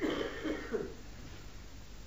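A man's brief, faint throat clearing in the first second.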